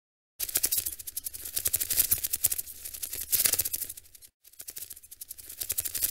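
Sound effect of a channel intro animation: a dense, rapid crackling rattle of clicks that starts about half a second in, breaks off briefly a little past four seconds, then resumes.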